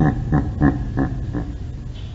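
A man laughing heartily, a run of short 'ha' pulses about three a second that dies away about a second and a half in, over a low steady rumble.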